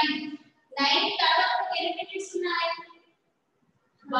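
A woman's voice in sing-song, drawn-out phrases: a short phrase ends at the start, a longer one runs from just under a second in to about three seconds, and then it stops.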